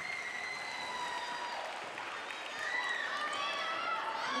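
Audience applauding steadily in an arena, with a few faint voices from the crowd.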